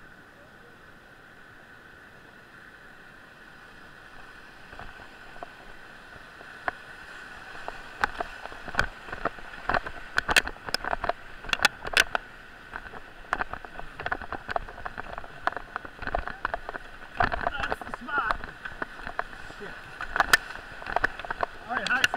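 Whitewater rapid rushing, growing steadily louder as the raft closes on it. From about eight seconds in, frequent sharp splashes and knocks of water against the raft and camera ride over the rush as the raft enters the white water.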